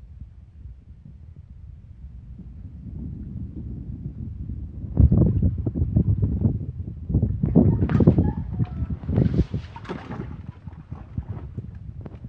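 Puppies splashing and paddling in shallow water in a plastic kiddie pool, with low wind rumble on the microphone; the splashing grows busy about five seconds in and tapers off near the end.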